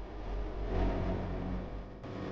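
Soundtrack drone: a deep, low sound with a few held tones, swelling about a second in and then fading.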